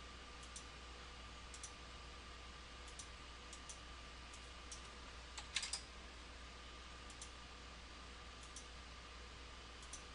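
Computer mouse clicking faintly every second or so, many clicks a quick double tick, with a louder quick run of clicks about halfway, over a faint steady electrical hum.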